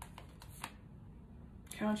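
Tarot cards being leafed through by hand, with a few quick card flicks in the first second or so. A woman starts speaking near the end.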